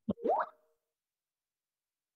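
A computer notification sound: a short click and a quick rising 'plop'-like blip with a brief held tone, lasting about half a second right at the start.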